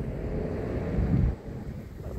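Low street-traffic rumble with wind buffeting the microphone, including a short, louder low gust about a second in.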